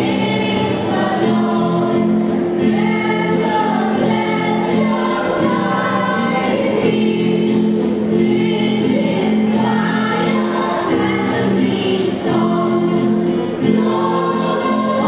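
A young choir singing with musical backing, in long held notes that move from phrase to phrase.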